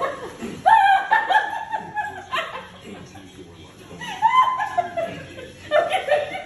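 High-pitched laughter with squeals, in two long stretches, the first about a second in and the second about four seconds in.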